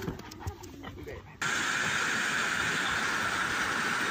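Steady rush of fast-flowing floodwater, starting suddenly about a second and a half in, after a few faint short sounds.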